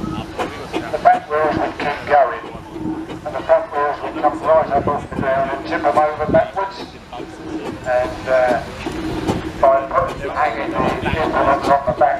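Voices talking over a steam traction engine running.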